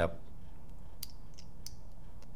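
A few light metallic clicks from the small cap and pin of an Autococker paintball gun as the pin is pushed through the cap's hole and lined up. The clearest click comes about a second in and another a little later.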